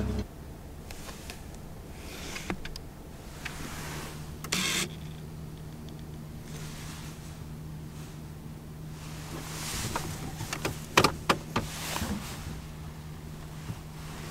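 Truck engine idling, heard from inside the cab as a steady low hum. A few short knocks and clicks come through, with a cluster of them about eleven seconds in.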